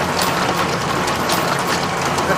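A geared industrial machine running: cams, gears and rollers turning with a steady mechanical clatter and repeated sharp clicks a couple of times a second.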